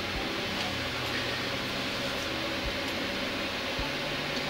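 Steady hiss of fan noise with a faint low hum, picked up by a microphone on top of a monitor. There are a few faint low bumps.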